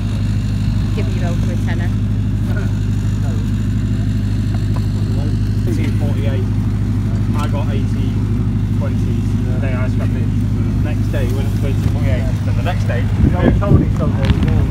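A steady, loud, low engine drone, like a vehicle idling close to the microphone, with faint chatter of people around it. Near the end come irregular bumps and rustling as the camera is handled and moved.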